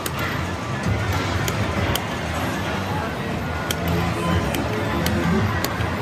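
Slot machine playing its hold-and-spin bonus music while the reels spin, with sharp chiming clicks about once a second over casino background chatter.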